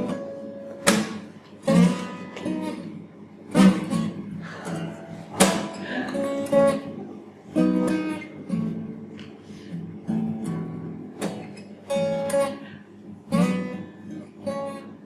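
Steel-string acoustic guitar strummed in a steady rhythm of chords, with a strong stroke every second or two: the instrumental intro to a comic song.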